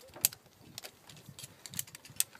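Metal carabiners and a zipline pulley trolley clinking and clicking as they are handled and clipped onto the steel cable, with several sharp clicks spread through, the loudest near the start.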